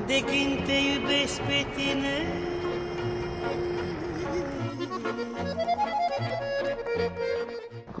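Romanian traditional folk music as a background track: a melodic line over sustained notes, with a rhythmic bass coming in about halfway.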